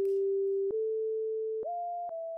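A lone sine-like synth tone playing long held notes at the end of a hip-hop beat, stepping up in pitch twice with a faint click at each note change and slowly fading out.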